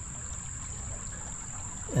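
Shallow creek water trickling steadily, with a steady high-pitched insect buzz over it.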